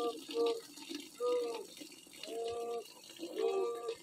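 A person's voice in about four short, drawn-out, level tones, over a faint steady hiss.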